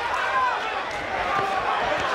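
Boxing crowd noise: a steady murmur of spectators with voices shouting out over it, strongest in the first half-second.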